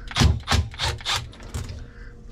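Milwaukee cordless impact driver run in about five short bursts, each a quick burst of rattling blows, backing out a screw from a refrigerator evaporator fan motor bracket.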